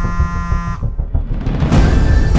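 Dark film score with deep drum hits, over which a phone's buzzing ring tone sounds once for under a second at the start, an incoming call that is then answered.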